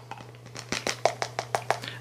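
A plastic powder scoop tapping again and again on the rim of a plastic container, knocking protein powder out of it: a quick run of about a dozen light clicks starting about half a second in.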